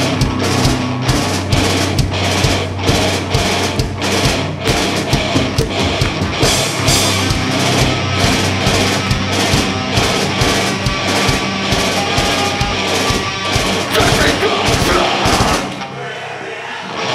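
Live heavy rock band playing through the PA: distorted electric guitars and bass over dense, fast drum hits. The music cuts off abruptly just before the end.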